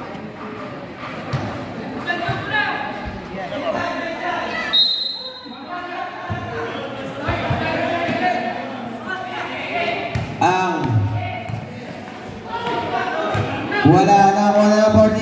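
A basketball being dribbled and bouncing on a hard outdoor court during live play, under the shouts and chatter of players and spectators. A short, steady high tone sounds about five seconds in.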